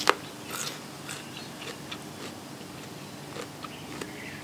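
Close-up eating sounds: a loud crunchy bite of raw vegetable at the start, then chewing with a run of smaller crunches and wet clicks.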